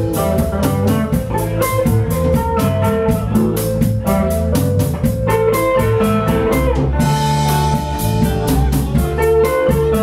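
Live blues band playing: an archtop electric guitar over a drum kit keeping a steady beat.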